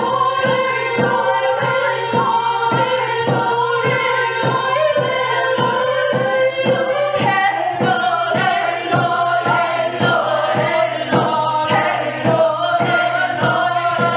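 Female vocal ensemble singing in harmony to a steady, even beat on a hand-held frame drum struck with a wooden beater.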